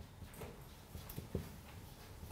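Faint marker strokes on a whiteboard, with a few soft taps of the marker tip about a second in, over light room hiss.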